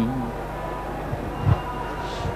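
A held Carnatic vocal note dies away right at the start, leaving the steady low hum of a stage sound system with a soft thump about one and a half seconds in.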